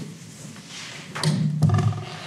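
Rustling of large paper plan sheets being turned at a table, with a dull thud a little over a second in.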